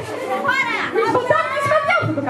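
A crowd of young children calling out at once in a large hall, many high voices overlapping as they clamour to be chosen.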